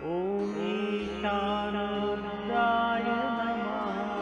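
Devotional mantra chanting in long held notes, the voice sliding up into a new note at the start and another note entering about a second in, over a steady drone accompaniment.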